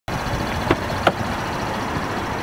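Car engine idling steadily, with two brief clicks a little under a second in.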